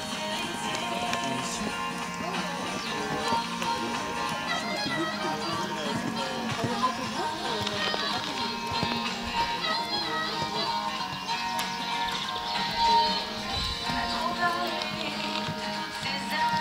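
Music playing throughout, with faint hoofbeats of a cantering horse on the arena sand under it.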